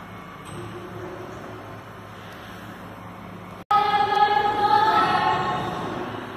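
A refuse truck runs steadily with a low hum. About two-thirds of the way in, after a brief break, a loud steady high whine sets in as the hydraulics work the rear bin lift.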